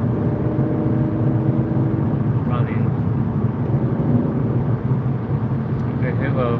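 Steady road and engine noise of a car cruising at motorway speed, heard from inside the cabin, with a faint low hum in the first couple of seconds. A brief faint voice about two and a half seconds in.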